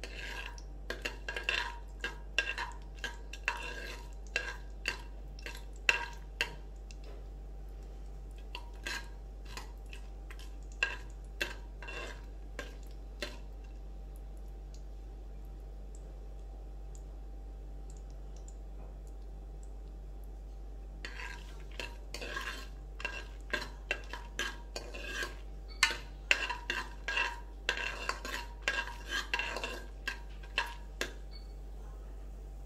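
A steel spoon stirring in an aluminium pressure cooker, clinking and tapping against the pot with a ringing metallic sound, as the tempering spices are stirred in hot ghee and oil. The clinks come in two spells with a quiet stretch of several seconds in the middle.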